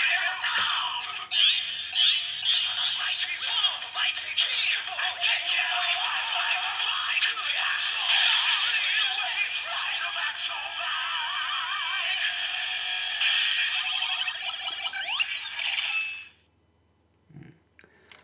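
DX Gamer Driver toy belt playing its level-up sound through its small built-in speaker: electronic music with recorded voice calls, thin and without bass. It cuts off suddenly about sixteen seconds in.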